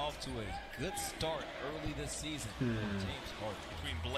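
Basketball game audio: a ball bouncing on a hardwood court in short knocks, under a man's voice.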